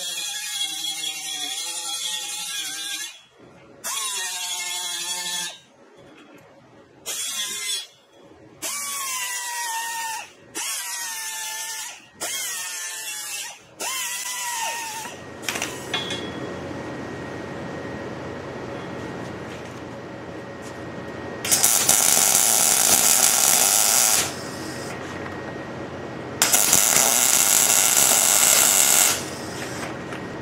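Pneumatic right-angle die grinder with a sanding disc, run in about six short bursts, its whine rising and wavering as the disc bears on galvanized steel pipe to strip the zinc coating before welding. In the second half come two loud crackling bursts of a few seconds each from the welding arc.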